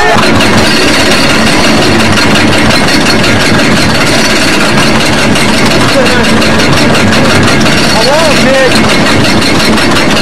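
Ninja suspended roller coaster car running along its track: a loud, steady rumble of track and wind noise on the camcorder microphone. A few short riders' cries come about six and eight seconds in.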